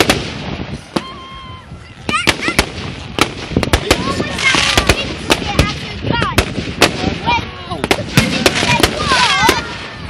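Aerial fireworks going off: a rapid, irregular series of sharp bangs, with bursts of crackling hiss around the middle and near the end.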